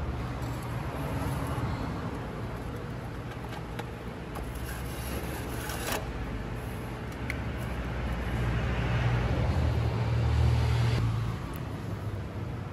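Low, steady rumble of motor traffic, growing louder for a few seconds near the end, with a few faint clicks of metal parts being handled.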